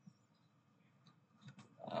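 Near silence: room tone, then a man's drawn-out hesitant 'ah' starting just before the end.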